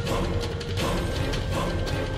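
Dramatic background score of a TV serial: a quick, irregular clicking rhythm over a steady held note.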